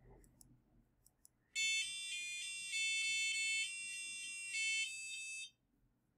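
An Adafruit Circuit Playground board's buzzer plays a quick run of high electronic beeping notes, stepping up and down in pitch for about four seconds: a short tune played from a programmed array of notes.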